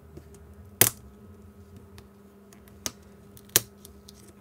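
Sharp plastic clicks and taps from fingers working the button overlay and case of an HME COM6000 intercom belt pack as the overlay is peeled up: one loud click just under a second in and two more near the end, with fainter ticks between.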